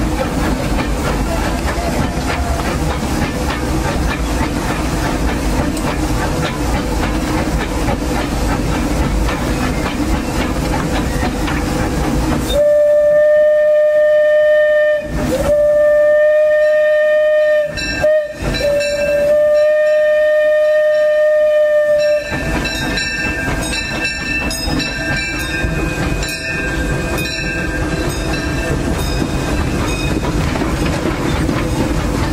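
Steam locomotive C.K. Holliday running, heard from the cab, with a steady rumble and rattle. About twelve seconds in, its steam whistle sounds for nearly ten seconds: one steady tone, broken by two short gaps into three blasts. Then the running noise returns.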